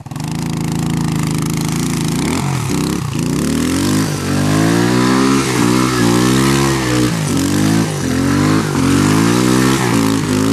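Small dirt bike engine running at a steady pitch, then revving up and down about once a second as the bike is ridden through mud.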